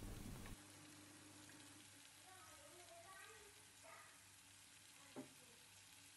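Faint sizzling of chicken kebabs shallow-frying in oil with melting butter in a pan, with a single click about five seconds in.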